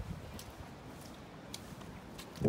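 Quiet outdoor background: a steady low rumble with a couple of faint clicks and no clear event.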